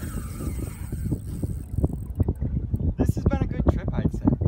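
Wind buffeting the microphone, a gusty low rumble, with a quick run of sharp clicks and knocks in the second half and a short bit of voice about three seconds in.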